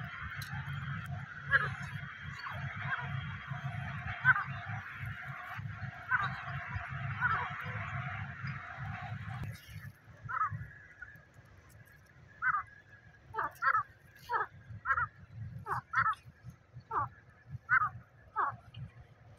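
A dense chorus of bird calls over a low rumble, which cuts off abruptly about halfway. After that comes a series of short, falling calls from a francolin (teetar), roughly one or two a second.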